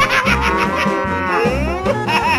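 A cow's long moo, its pitch falling at the end, over background music with a steady bass beat.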